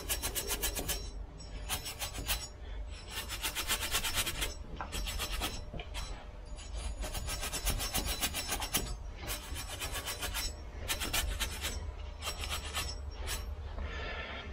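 Hand scrubbing of a vehicle's metal wheel hub face with a small hand-held abrasive, cleaning it before a new brake rotor goes on. Short bursts of rapid back-and-forth rasping strokes with brief pauses between them.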